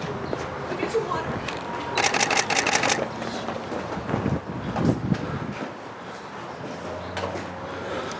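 Rapid burst of camera shutter clicks, about ten a second for about a second, from a photographer's camera firing continuously.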